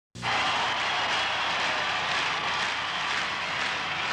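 Steady rushing noise from the spinning-globe intro's sound effect, starting abruptly right at the beginning and holding even, with no tune or rhythm.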